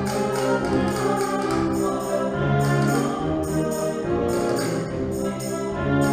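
Concert wind band playing: saxophones, clarinets, flutes and brass with tuba and double bass, holding sustained chords over a steady rhythmic pulse.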